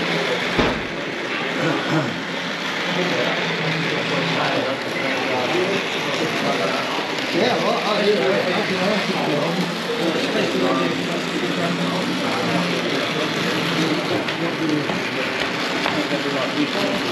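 Crowd chatter: many people talking at once in a busy hall, with no single voice standing out, and a brief thump about half a second in.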